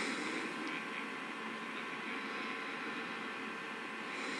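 Steady hiss with a faint hum underneath, even throughout, with no speech.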